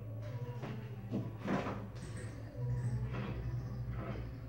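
A refrigerator door being pulled open, with a few short soft noises of handling and movement over a steady low hum.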